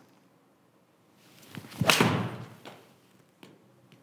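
A golf iron swing, a forged Mizuno Pro 223, with a brief rising swish of the downswing and then one sharp strike on the ball about two seconds in, ringing briefly as it fades. The strike is a well-struck shot that flies dead straight.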